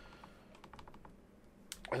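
Faint, quick clicks of synthesizer keys and buttons being pressed on a MIDI keyboard and OP-Z: a few about halfway through and a couple more near the end, with no music playing.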